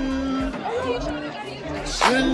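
Teenagers' voices chattering and talking over one another at a crowded lunch table, with music playing along with the voices.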